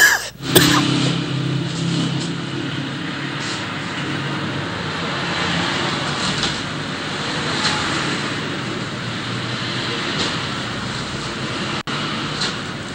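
Steady rushing background noise with a low hum underneath, the unclear ambient track of a replayed security-camera shop video. A short loud sound comes right at the start.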